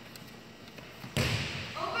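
A volleyball struck once, a sharp smack a little over a second in, trailed by the hall's echo, over a low murmur.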